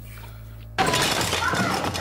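A sudden crash with glass shattering about a second in, breaking a quiet pause. It is followed by a continuing loud clatter of commotion with voice-like cries.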